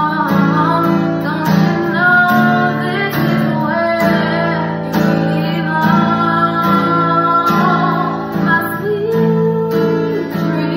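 A woman singing a slow soul ballad while strumming an acoustic guitar in a steady rhythm.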